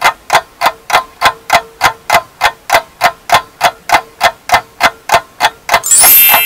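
Clock-like ticking sound effect, about three and a half even ticks a second, over a faint steady tone.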